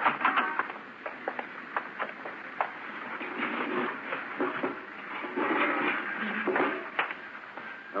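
Radio-drama sound effects of a door being opened and a room being entered: a string of sharp knocks and clicks in the first few seconds, then two longer stretches of scraping and shuffling, with a last knock near the end.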